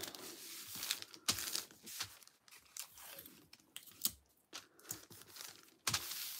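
A striped translucent packaging wrapper being handled and smoothed flat over a card, crinkling in short, irregular crackles.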